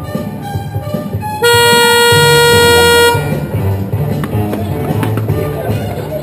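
Music playing, with a car horn sounding one long steady blast, starting about a second and a half in and lasting nearly two seconds.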